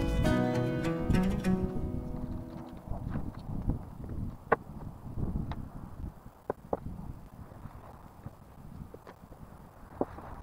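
Background music fading out over the first couple of seconds, then a low outdoor rumble with about half a dozen scattered sharp knocks and clicks as a man climbs down a ladder and handles framing lumber on sawhorses.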